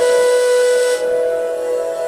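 Indian flute holding one long, breathy note at a steady pitch. The breath noise is strongest for about the first second and then thins.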